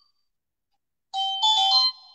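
Mobile phone ringtone: a two-part electronic chime of steady tones, starting about a second in and lasting under a second.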